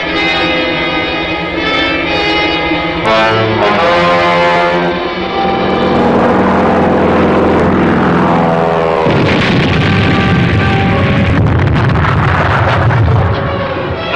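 Dramatic orchestral score with brass. About nine seconds in, a long, low, rumbling blast breaks in under the music: an aircraft's bomb exploding close by.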